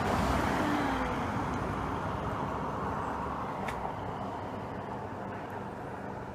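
Rushing noise like road traffic going by, loudest at first and fading slowly away.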